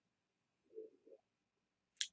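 Near silence: room tone, with a faint, brief low sound about half a second in.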